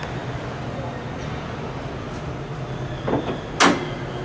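Hood latch of a 1965 Chevrolet Chevelle wagon released as the hood is opened, a single short, sharp clack about three and a half seconds in. A steady background hum runs underneath.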